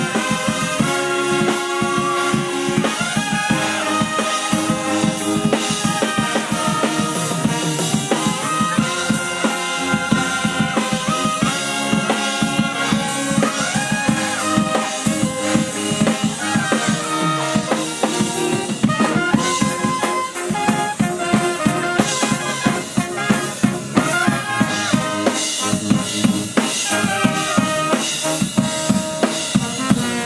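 Banda brass band playing live: trumpets, trombones, saxophones and sousaphone over a drum kit driving a fast, steady beat of snare and bass drum.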